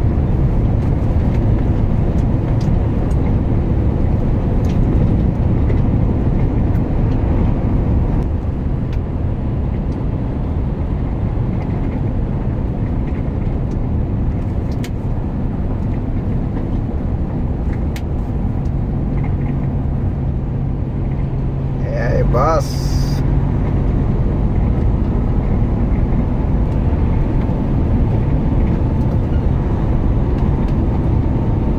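Truck engine and road noise heard from inside the cab while driving, a steady low rumble. About 22 seconds in, a brief wavering tone and a short sharp hiss stand out.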